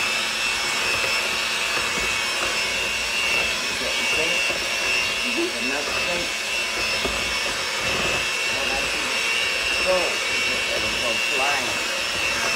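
Electric hand mixer running steadily, its beaters whirring through batter in a plastic tub, with a steady high motor whine.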